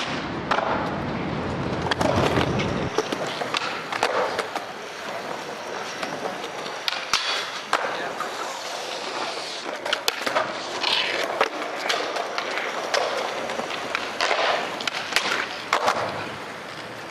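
Skateboard wheels rolling on smooth concrete. Sharp clacks of the board popping and landing recur throughout, with a cluster near the end.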